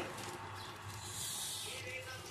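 Thick mutton curry simmering in an aluminium pot, giving a soft hiss that swells for a moment about a second in, over a faint steady low hum.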